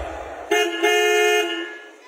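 Car horn honking twice, a short toot followed by a longer one, starting about half a second in.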